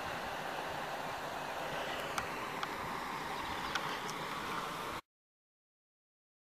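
Steady outdoor background hiss with a few faint, short high clicks in the second half. It cuts off suddenly to silence about five seconds in.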